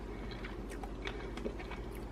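Quiet chewing of a mouthful of beef brisket in gravy: a few faint, scattered clicks over a low steady hum.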